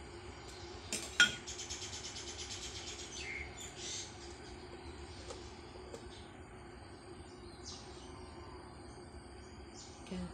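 Birds chirping, with a quick high trill a second or so in and scattered chirps after it; a sharp knock, the loudest sound, just before the trill. A faint steady hum underneath.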